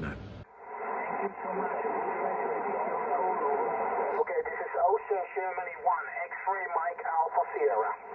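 HF transceiver's speaker playing 20-metre single-sideband band audio: a steady hiss of band noise with a thin, narrow-sounding voice of a distant station coming through, clearer from about halfway.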